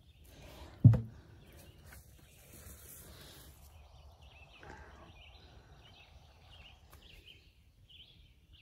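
Quiet outdoor garden ambience, broken by one sharp thump about a second in, with short faint high chirps in the second half.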